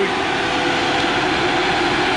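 Diesel engine of a John Deere skidder running steadily under load as it back-drags dirt with its front blade, with a steady droning tone over the engine noise.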